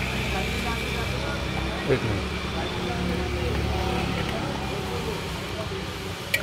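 Street background noise: a motor vehicle engine running steadily, with indistinct voices and a short clink about two seconds in.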